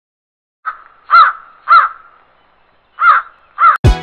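Crow cawing: five harsh calls, one short and then two pairs, each arching up and down in pitch. Music with a heavy beat starts just before the end.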